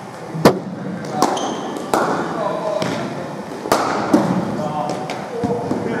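Sharp knocks of cricket balls against bat, hard floor and nets during batting practice in an indoor hall. There are about six knocks at irregular spacing, the loudest about half a second in.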